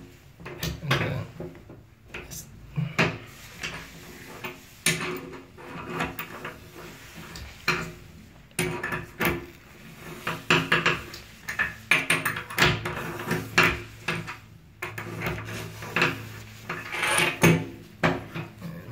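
Adjustable wrench clicking and scraping on a metal bathtub drain stopper as it is worked round to unscrew it, with irregular knocks and clatters of metal against the tub.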